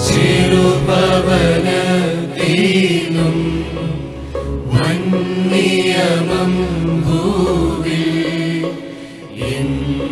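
A woman chanting a solo melody into a microphone over a steady, sustained accompaniment, with a short pause for breath near the end.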